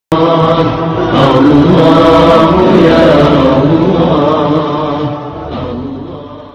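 Loud chanted vocal intro jingle that starts abruptly and fades out near the end.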